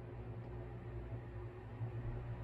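Room tone in a pause between words: a faint, steady low hum with light hiss.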